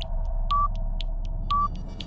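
Countdown-timer sound effect: a short high beep once a second over a steady hum and low rumble, with light ticks between the beeps.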